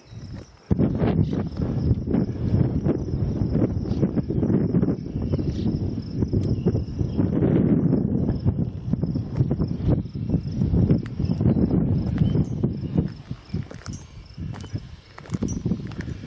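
Wind buffeting the camera microphone in loud, irregular gusts from about a second in, over a faint, steady, high insect trill.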